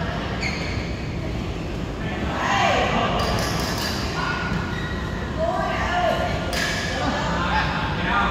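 Echoing voices of players talking and calling in a large badminton hall, with a few sharp racket-on-shuttlecock hits from play on the courts.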